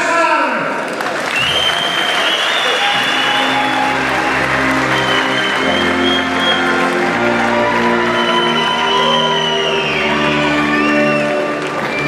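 Audience applauding and cheering over music from the hall's speakers; the applause rises about a second in and dies down near the end.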